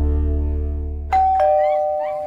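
Music ending on a held chord with a deep bass, fading away. About a second in, a two-note ding-dong chime sounds, a higher note then a lower one, and both ring on.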